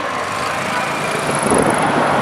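A car passing close by, its engine and tyre noise growing louder about a second and a half in.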